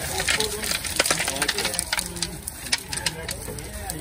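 Small brown river-rock pebbles pouring out of a bag onto pond stones: a rapid clatter of many small stone clicks that thins out toward the end, with faint talk behind.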